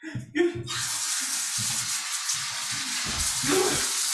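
A steady hiss begins just under a second in and carries on without a break, with a few soft low thuds beneath it.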